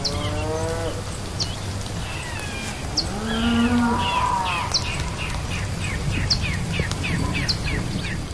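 Two long, low animal calls, the second louder, over a steady low rumble. In the second half, quick short high chirps repeat about three times a second, and a sharper high chirp sounds every second or so.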